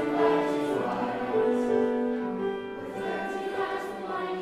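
A children's choir singing together in held notes, the voices moving to a new pitch about every second.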